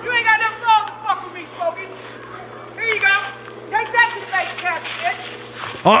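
People talking, indistinct voices, over a steady low hum.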